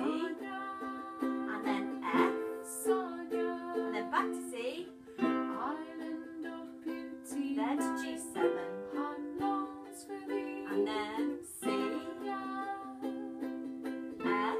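Ukulele strumming the chords of the chorus, starting on a C chord, with steady repeated strums.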